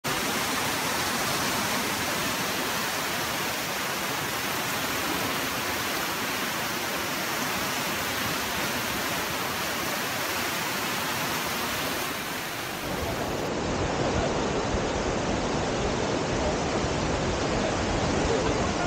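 River rapids rushing: a steady, even roar of white water. About thirteen seconds in it changes to a deeper, fuller rush.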